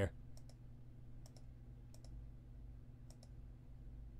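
Faint computer mouse clicks in quick pairs, four times, over a low steady hum.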